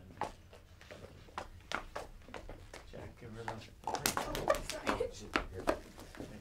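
Footsteps on a stage floor, a series of irregular knocks, with a voice under them; the knocks grow louder and come thicker about four seconds in.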